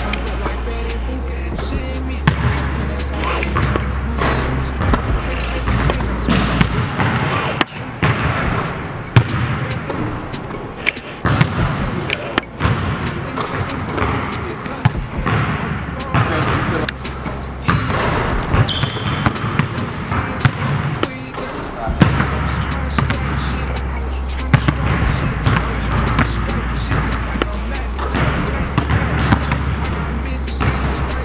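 Basketballs bouncing on a hardwood gym floor, with repeated sharp thuds, over background music with a deep bass line. The bass drops out for about a quarter of a minute in the middle.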